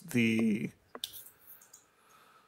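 A man's voice says one word, then a sharp click about a second in, followed by a few fainter clicks.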